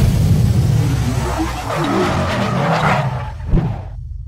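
Logo-reveal sound effect: a low rumble under a swelling whoosh, with a sharp hit about three and a half seconds in, then fading away.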